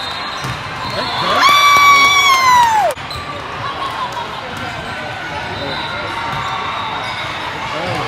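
A long, high-pitched shout in a gymnasium, held for about a second and a half starting about a second in, then falling in pitch and cutting off. Beneath it is the echoing gym background of a volleyball match, with ball hits and shoe squeaks.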